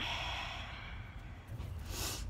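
A woman breathing out in a long, airy sigh that fades over about a second, then sniffing sharply near the end as she smells a fragrance held to her nose.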